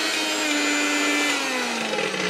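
Electric mixer grinder running with a stainless steel jar fitted: a steady high motor whine whose pitch slides down through the second half.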